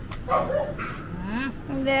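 Indian Spitz puppy giving a few short yips and a rising whine in the first second and a half, followed by a woman's cough near the end.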